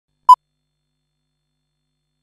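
A single short beep of a film-leader countdown, one steady pitch, about a third of a second in.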